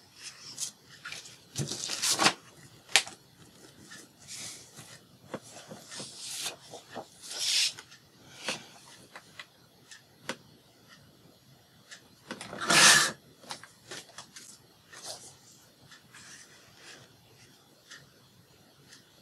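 Paper being handled and slid across a craft mat: a string of short rustles and scrapes with small taps, the loudest rustle about two-thirds of the way through.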